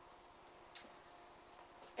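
Near silence: room tone with a faint steady hum and a single short, sharp click just under a second in.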